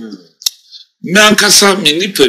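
A man speaking, largely in Akan, breaks off for under a second; in the pause there is a single sharp click, then he goes on talking.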